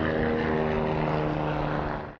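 Steady drone of an aircraft engine and propeller with a pulsing low end, starting to fade away at the very end.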